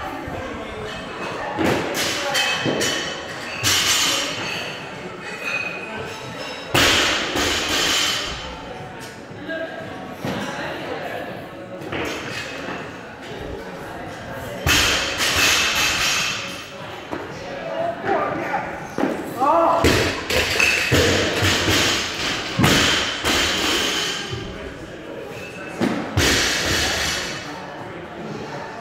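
Loaded barbells with rubber bumper plates dropped onto a gym floor, thudding several times at irregular intervals.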